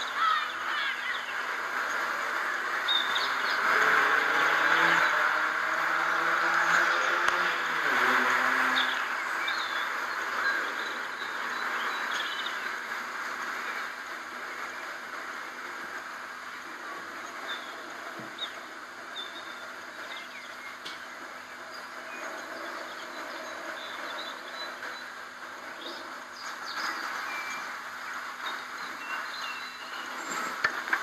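Outdoor ambience with a steady hiss. Between about four and nine seconds in, a passing engine's drone is loudest, its pitch sliding downward. Scattered bird chirps sound throughout.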